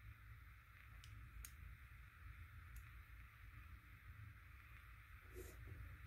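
Near silence: room tone with a low steady hum and a few faint clicks.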